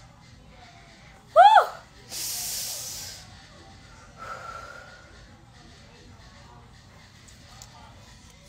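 A woman's short, loud "woo!" that rises and then falls in pitch, followed straight after by a breathy hiss lasting about a second.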